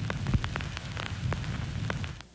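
Crackling noise with scattered clicks over a low hum.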